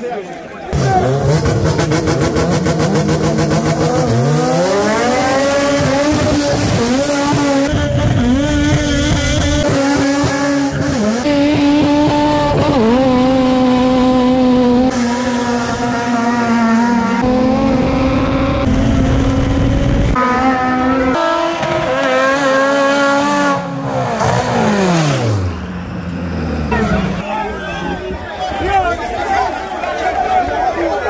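A front-wheel-drive four-cylinder race car's engine revved hard and held at high revs for about twenty seconds, with brief dips, while it spins its tyres in a smoky burnout. The revs fall away near the end.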